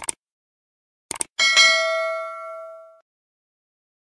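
Subscribe-button animation sound effect: a mouse-click sound at the start and two quick clicks about a second in, then a bright bell ding that rings out and fades over about a second and a half.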